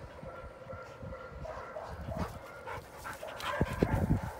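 Dogs panting and scuffling about at close range while playing, getting louder near the end.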